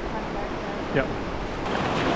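Steady rushing of whitewater river rapids. Near the end the rush grows louder and closer, with wind on the microphone.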